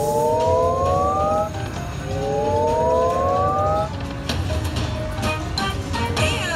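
Video slot machine sounds during a free-spin bonus. A rising electronic chord plays twice, each glide climbing for about a second and a half as the reels spin. In the second half a few short knocks sound as the reels stop.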